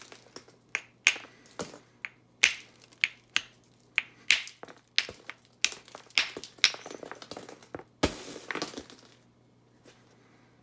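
Hammerstone striking an Onondaga chert core in hand-held percussion flintknapping: a quick series of sharp clicks about two a second, then a louder crack with a brief clatter about eight seconds in.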